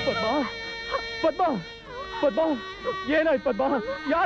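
A man sobbing and crying out in grief, his voice breaking into short cries that rise and fall in pitch, with a steady held tone of background music behind.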